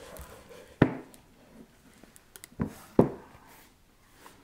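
Handling of a photo album and its solid wooden box: a few short, light knocks and taps as the album is lifted out and the box is moved, about a second in and twice near three seconds, with faint rustling between.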